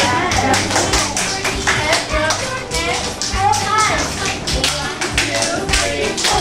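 Rhythmic hand-clapping, several sharp claps a second, over music with a steady bass line, with voices of a woman and children in between.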